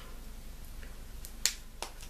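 Two sharp little clicks, about a third of a second apart, the first the louder, from a plastic lipstick case being handled in the fingers.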